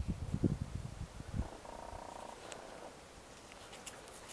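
Handling rumble on the camera microphone as fingers fumble a plastic plant label close to it: low irregular thumps for about the first second and a half, then quiet outdoor air with a short faint buzz about two seconds in.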